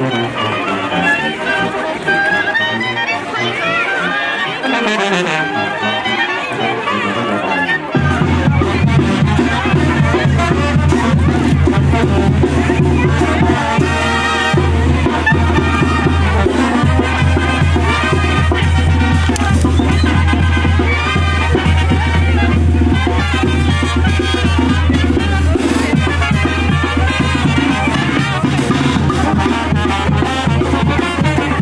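Brass band music playing a dance tune, with a crowd talking over it. A heavy, steady bass comes in suddenly about eight seconds in and holds under the melody.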